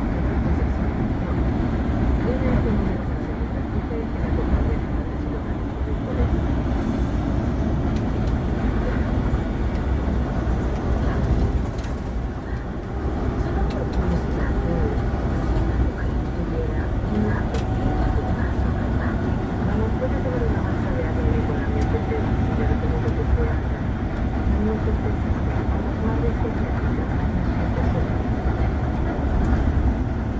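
Steady engine and road rumble heard from inside an intercity coach bus cruising on a highway, with faint voices in the background.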